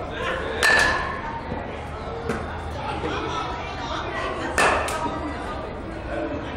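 Two sharp cracks about four seconds apart, each with a short metallic ring: an aluminium baseball bat striking pitched balls in a batting cage.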